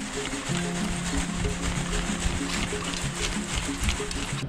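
Background music: a held low note under a steady ticking beat.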